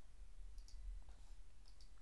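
Two faint computer mouse clicks about a second apart, over a low steady room hum.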